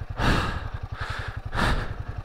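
A motorcycle rider breathing hard, with two loud exhalations at the start and about a second and a half in, over the steady low pulsing of a Royal Enfield Himalayan 450's single-cylinder engine. The heavy breathing comes from the strain of riding icy ground at over 5,000 m.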